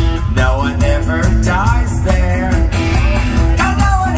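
Live rock band playing: bass and drums keep a steady beat under a guitar riff, with sliding wordless vocal lines gliding up and down over the top.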